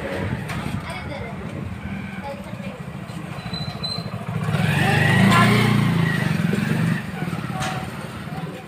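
An engine running nearby, steady and pulsing low, growing louder for about two seconds past the middle and then dropping back, with children's voices over it.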